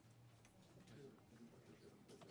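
Near silence: room tone with faint scattered ticks.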